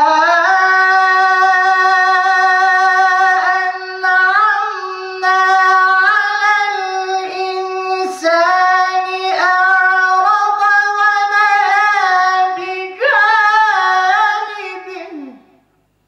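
A man chanting solo and unaccompanied in a high voice, holding long ornamented notes with brief breaths between phrases. Near the end the last note slides down and fades out.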